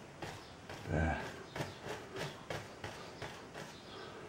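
A one-inch bristle brush scrubbing linseed oil into a canvas: soft, irregular brush strokes, with a short hummed murmur about a second in.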